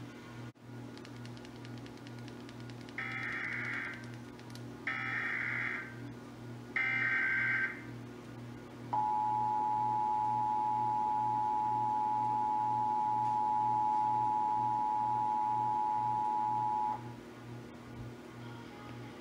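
Emergency Alert System test tones played through a television speaker. First come three short bursts of SAME header data tones, about a second apart, then the two-tone attention signal, a steady dual tone held about eight seconds. A low pulsing hum sounds underneath.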